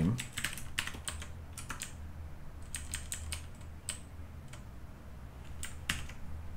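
Computer keyboard being typed on: a quick run of keystrokes in the first couple of seconds, then scattered single keystrokes.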